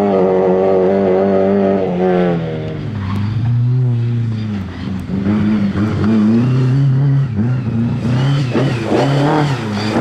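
Lada 2101 rally car's four-cylinder engine at high revs, easing off about two and a half seconds in, then revving up and down repeatedly through the second half as the car is driven through a gravel corner.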